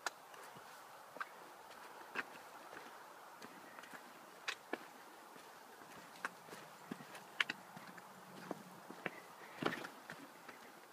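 Footsteps of a hiker walking a rocky trail strewn with dry leaves: irregular crunches and knocks of boots on stone, about one every second, over a faint steady hiss.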